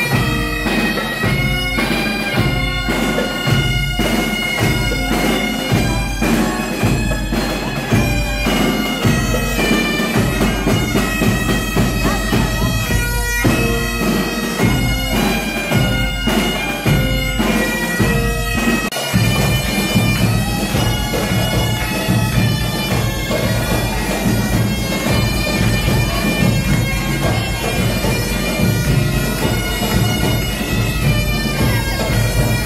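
Scout pipe band playing: a bagpipe with saxophone and trumpet over a steady beat of snare drums and bass drum. About two-thirds through, the drumming becomes denser.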